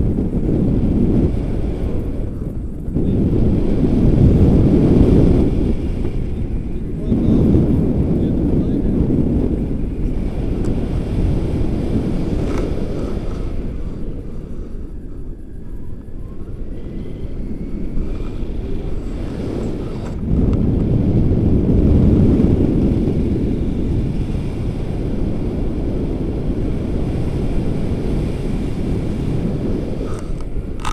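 Wind buffeting the action camera's microphone in flight under a tandem paraglider: a loud low rumble that swells and eases in gusts.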